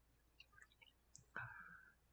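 Near silence with a few faint, short clicks and one slightly louder click about one and a half seconds in.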